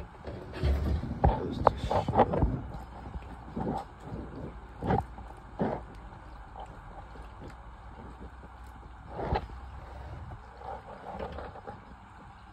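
Water poured from a plastic bottle into a plastic shower waste trap and running down the drain, with several knocks and clunks, the loudest in the first few seconds. It is a leak test of the newly fitted shower waste before tiling.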